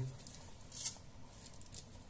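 Faint, brief rustles as a pinch of salt is sprinkled by hand over a pot of split peas in water: once just under a second in, then a few more near the end.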